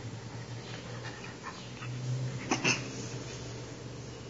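Puppy giving two short yips in quick succession about two and a half seconds in, over a steady low hum.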